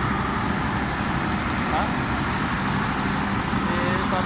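An engine running steadily: a constant low rumble with an even hum.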